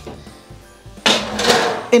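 Metal roasting tin clattering and scraping as it is slid into a gas oven, a noisy rattle about a second in that lasts about a second. Quiet background music plays underneath.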